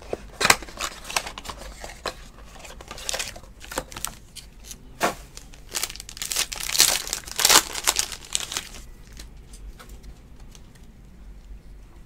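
A cardboard trading-card box and a foil card pack being handled, crinkled and torn open by hand: irregular crackling and tearing, densest about six to eight seconds in, thinning out after about nine seconds.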